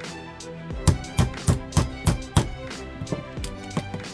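A hammer striking a metal wedge set behind a folding knife's bolster pin, about six sharp blows roughly three a second, then a few lighter taps, as the pin is driven out of the bolster. Background music with violin plays throughout.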